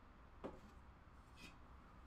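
Near silence: room tone with a low hum, and one faint knock about half a second in.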